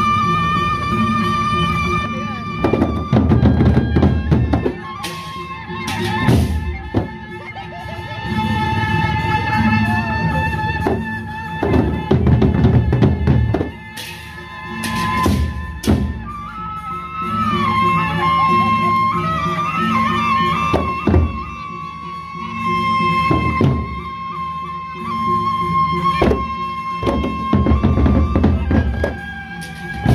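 Gendang beleq ensemble playing: large double-headed barrel drums beaten in a driving rhythm, with a held, wavering melodic line above and several sharp strikes cutting through.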